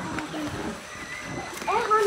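Faint background voices between louder speech, with a short rising voice-like sound near the end.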